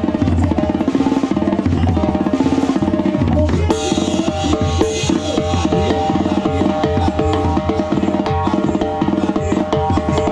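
A set of tarolas (banda snare drums) played with drumsticks in rapid, dense strokes, over a live banda's brass holding sustained notes.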